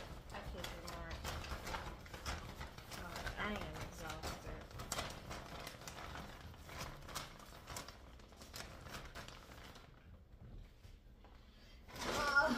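Groceries being handled on a kitchen counter: irregular light clicks, knocks and rustles of packages and bags, with a few quiet spoken words mixed in, and a quieter spell near the end.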